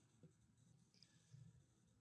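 Near silence: a pause between narration sentences, with only faint room tone.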